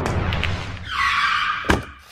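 Logo sting sound effect: a noisy screech comes in about a second in and ends in one sharp hit near the end.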